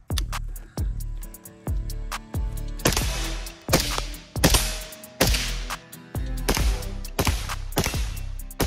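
Semi-automatic AR-15 rifle in .223 Wylde fired as a steady string of single shots, about one every 0.7 seconds, under background music with a bass line.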